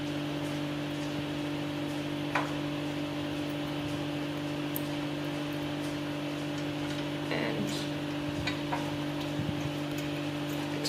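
Steady low electrical hum, with a few faint metallic clinks of a steel chain being handled and hooked onto a sewing machine's foot pedal.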